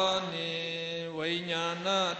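A single voice chanting in Pali. It draws one syllable out on a steady pitch for about a second, then glides up into the next syllable.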